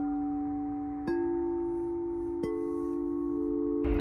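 Frosted quartz crystal singing bowls struck with a mallet: one bowl is already ringing, then two more strikes land about a second in and about two and a half seconds in. Each strike adds a long, steady tone at a different pitch, so the tones overlap and ring on together.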